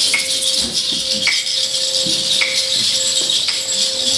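Hand percussion in a live jazz set: a shaker rattling continuously, with a light ringing strike about once a second, over a steady held tone.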